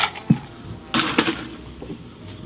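Ice cubes tipped from a scoop into a stainless steel cocktail shaker tin, clattering against the metal in a few sharp knocks.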